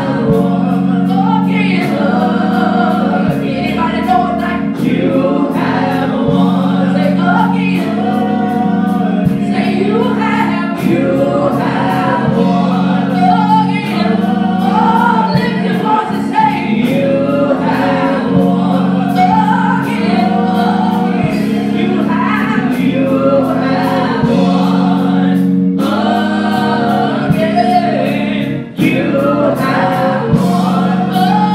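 Gospel song sung by a young woman into a microphone, backed by organ chords that are held and change every second or two, with a drum kit keeping a steady beat.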